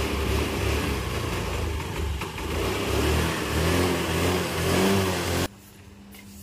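A vehicle engine running and revving, its pitch rising and falling, mixed with a rough low rumble. It cuts off suddenly about five and a half seconds in.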